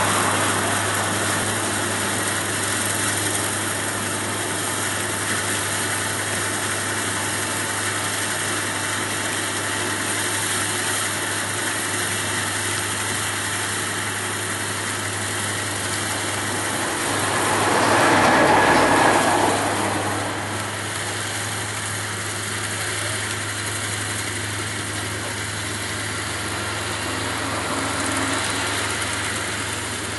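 Rice combine harvester running steadily while cutting standing rice, a constant engine hum, with a louder swell lasting a couple of seconds about two-thirds of the way through.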